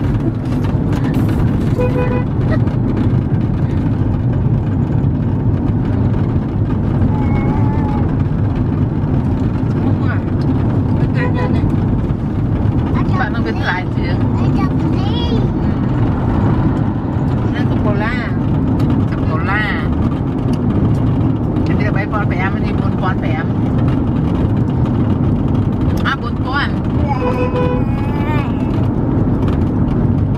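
Steady road and engine rumble inside a moving car's cabin, with voices rising over it now and then and a few short beeps.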